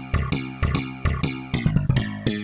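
Slap bass patch, played from MIDI, running a quick line of short plucked notes, about five or six a second. Every note sounds slapped because the patch's velocity mapping triggers the slap layer throughout.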